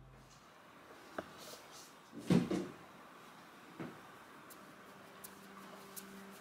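A wooden cabinet being opened and things taken out of it. There is a small click, then a louder knock and rattle about two seconds in, another knock near four seconds, and a few faint ticks.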